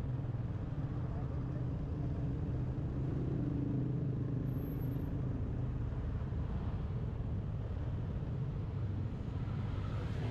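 Motorcycle engine running steadily with road noise while riding in traffic, a constant low hum.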